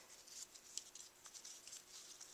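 Near silence, with faint, scattered rustles and small ticks of ribbon being handled and pulled as a bow is tied.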